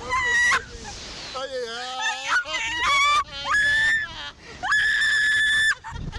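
Two riders on a slingshot ride shrieking and laughing, ending in two long, high-pitched screams held steady, about a second each, in the second half.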